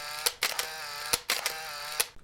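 Added editing sound effect under a title card: a bright, ringing pitched tone broken by a few sharp clicks, cutting off suddenly at about two seconds.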